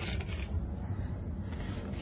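A cricket chirping in a rapid, even, high-pitched pulse of about eight beats a second, over a faint low hum.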